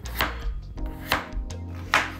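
Chef's knife chopping through raw peeled pumpkin onto a bamboo cutting board: three firm cuts roughly a second apart, with lighter knife taps between them.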